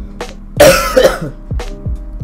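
A man coughs in two loud bursts about half a second in, over background music with a steady beat.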